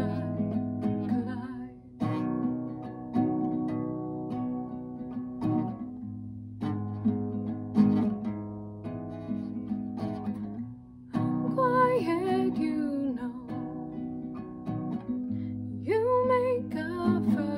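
Classical guitar strummed in a slow chord pattern, each chord ringing before the next. A woman's singing voice joins the guitar from about eleven seconds in.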